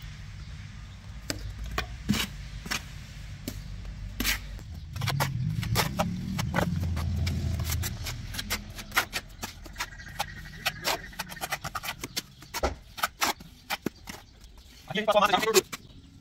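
Steel mason's trowel scraping and tapping wet cement mortar, scooping it up and working it on a hawk and onto a brick wall to build a plaster guide strip, with many sharp clicks and scrapes. A low rumble runs for a few seconds in the middle, and a brief voice is heard near the end.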